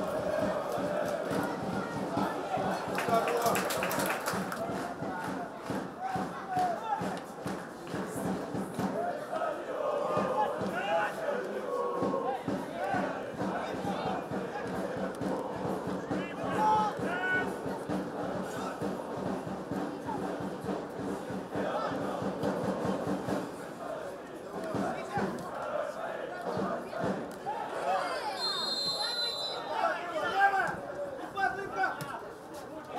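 Field sound at a football match: players and spectators shouting during play, with a referee's whistle blast near the end.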